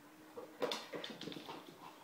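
A young pet making a quick run of short, high sounds, starting about half a second in and lasting about a second.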